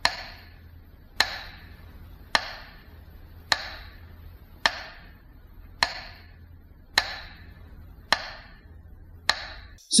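Metronome beat played for a minute of silence: sharp, ringing ticks at an even, slow pace, a little under one per second, nine in all, over a steady low hum.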